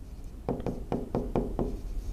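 Stylus tip tapping and clicking against the glass of an interactive whiteboard screen while handwriting a word: a quick, irregular series of short taps, about ten in two seconds.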